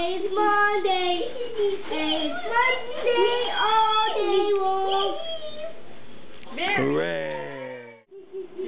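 Young children's high voices talking and chanting in a sing-song way, with some drawn-out notes. Near the end comes a single falling pitched sweep about a second long.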